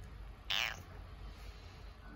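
Domestic cat giving one short, high-pitched meow that falls in pitch, about half a second in.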